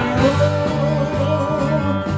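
A live rock band playing: electric guitars, bass guitar and drum kit, with an evenly repeated bass line and one long held note wavering slightly in pitch above it.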